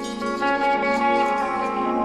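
Electric guitar playing slow, held notes in a band recording.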